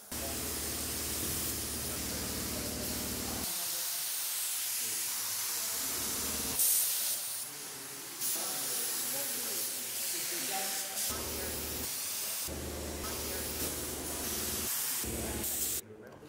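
Compressed-air spray gun hissing steadily as it sprays Fabrican liquid spray-on fabric onto skin. Several spray passes are cut together, and a low steady hum lies under parts of them.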